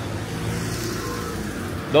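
Street traffic: a nearby motor vehicle engine running with a steady low hum, at an even level.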